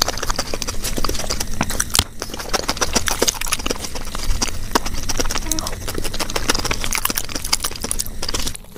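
Close-miked eating sounds sped up to three times speed: chewing and mouth smacks with the crackle of hands in foil plates, run together into a dense, fast clatter of clicks.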